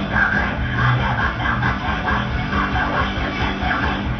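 Black metal music with heavily distorted electric guitars over drums, playing loud and without a break.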